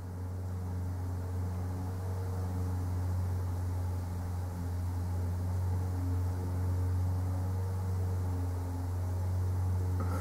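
A steady low hum with a faint even hiss underneath, unchanging throughout.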